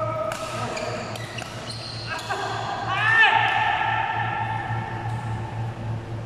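Rubber-soled court shoes squeaking on the sports floor in long drawn-out squeaks that start with a quick upward glide, mixed with sharp racket hits on a shuttlecock, in a large echoing hall.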